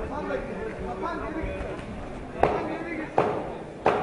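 Boxing gloves landing three sharp punches, about three-quarters of a second apart, in the second half. They sound over a steady background of shouting voices from the crowd and corners, with hall echo.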